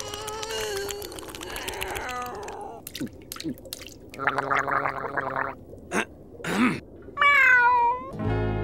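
Cartoon snail's cat-like voice: a held meow-like call, then gurgling slurps as it drinks from its water bowl, and a short falling meow near the end.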